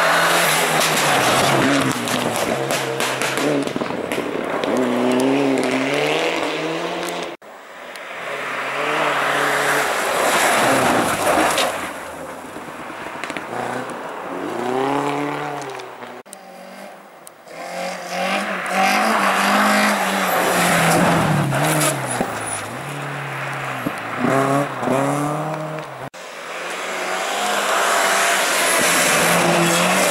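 Rally cars passing one after another at speed on a snowy stage, in four short passes split by abrupt cuts. Each engine is heard approaching and pulling away, its pitch climbing and dropping in steps through gear changes.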